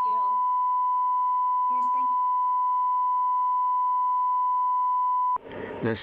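Broadcast line-up test tone: one steady, pure, high beep held at a constant level that cuts off suddenly about five and a half seconds in, with faint talk underneath it.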